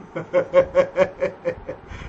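A person laughing, a quick run of about eight short, evenly spaced bursts at a steady pitch, about five a second.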